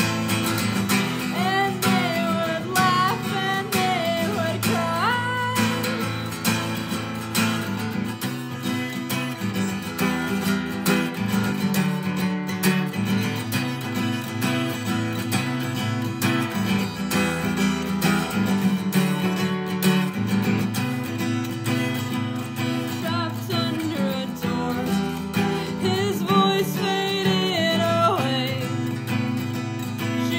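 Acoustic guitar playing a slow folk song, with a singing voice over it near the start and again later on.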